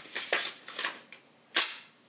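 Paper instruction leaflet being unfolded by hand, giving several crisp snaps and crackles of the paper, the loudest about a second and a half in.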